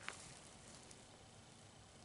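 Near silence, with one faint click just after the start as the CVA Hunter single-shot break-action rifle in .450 Bushmaster is opened to pull the spent case out by hand.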